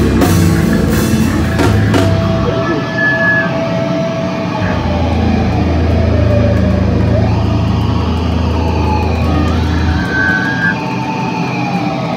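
Live hardcore band at full volume: drums and distorted guitars for about two seconds, then the drums stop and the amplified electric guitars and bass are left ringing with held feedback tones that slowly glide in pitch.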